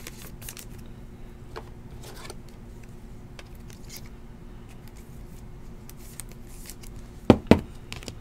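Trading cards being handled and slid over one another, giving soft scrapes and small clicks of card stock, with two sharper taps near the end. A faint steady hum runs underneath.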